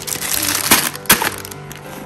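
Plastic-wrapped toys rustling and knocking as they are pushed into a cardboard shoebox, with two sharp knocks about a second in, over background music.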